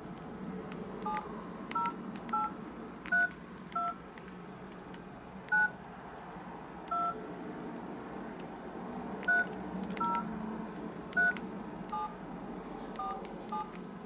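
Nokia mobile phone keypad sending touch-tones: about a dozen short two-note DTMF beeps at an uneven pace, one per key press, as a voucher number is keyed into an automated top-up phone line.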